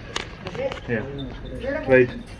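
Short bits of indistinct speech, with a sharp knock shortly after the start.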